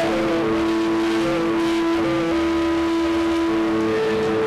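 Amplified electric guitar sustaining one steady, loud distorted note, with a few higher notes moving in small steps above it. The held note drops away just before a higher one takes over at the end.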